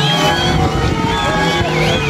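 Dirashe fila ensemble: several end-blown pipes, each holding its own note, overlap into a dense, steady chord over a low hum. Wavering high tones slide up and down above it.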